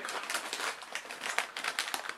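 Plastic crisp bag of Lay's Grids crinkling as it is handled and lifted: a dense run of irregular crackles.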